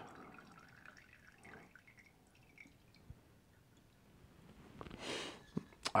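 Faint drips of wine from the needle of a Coravin-style cork-piercing wine dispenser after the pour is stopped, over an otherwise quiet room. About five seconds in there is a brief hiss, and then a sharp click.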